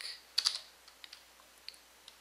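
Computer keyboard being typed on: a quick run of keystrokes about half a second in, then a few scattered single key clicks.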